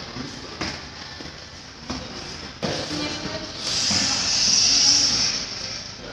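A steady hiss, lasting about two seconds from about three and a half seconds in, with a few light knocks earlier and faint voices in the background.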